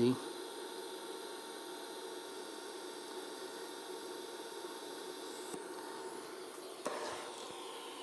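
DC TIG welding arc from a small 110-volt inverter, running at low current (about 35–40 amps) on thin overlapped sheet steel, with the shielding gas flowing: a faint, steady hiss, very quiet. The arc is running a little cold. A short click comes near the end.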